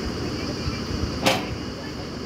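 Truck-mounted borewell drilling rig's engine and air compressor running steadily, with one short, sharp burst, the loudest sound, about a second in.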